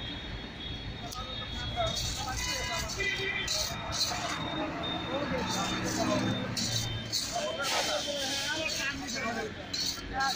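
Busy street ambience: people talking in the background over a low traffic rumble, with a brief high steady tone about two to three seconds in. Short metallic scrapes of a perforated ladle stirring chickpeas in an iron wok come through now and then.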